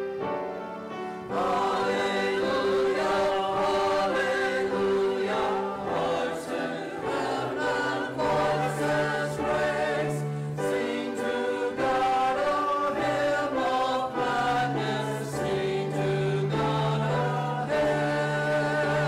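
Church choir of mixed men's and women's voices singing long held notes together under a conductor. The singing is softer for the first second, then comes in fully.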